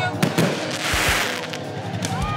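A crackling burst of noise that swells and fades within about half a second, after a few sharp cracks, over background music.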